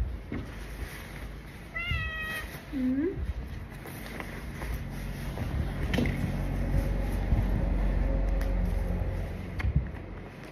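Domestic cat meowing once, a short high meow about two seconds in, followed by a brief lower rising call. Later, fabric rustles as a jacket is pulled on.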